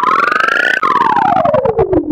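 Electronic logo sound effect, pitch-shifted and layered in the G-Major effect: a loud synthesized tone with a fast flutter glides steadily up in pitch, breaks a little under a second in, then glides back down.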